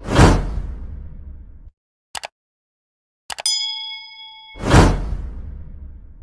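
Edited-in sound effects: a sudden rushing hit that fades over about a second and a half, a brief double tick, then a bell-like ding ringing for about a second, and a second rushing hit that swells and fades near the end.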